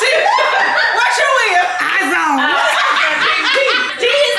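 Several people talking over one another and laughing loudly in a lively group game.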